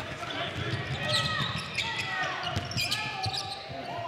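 Game sounds of a basketball court in a large gym: a basketball bouncing on the hardwood floor amid the general murmur of voices from players and crowd.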